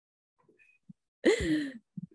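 A woman's breathy sigh, falling in pitch, about half a second long, coming a little past halfway after a second of near silence, as she laughs with happiness.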